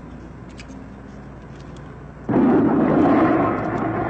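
A car engine starts suddenly about two seconds in and keeps running loudly, with a rough, noisy rumble.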